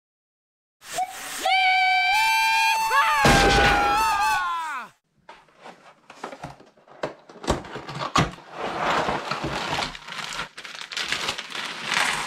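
A short electronic intro sting: a held tone that steps up, then slides down in pitch and cuts off about five seconds in. Then hands handle a cardboard jigsaw-puzzle box and the plastic bag of pieces inside it, with small knocks, clicks and rustling.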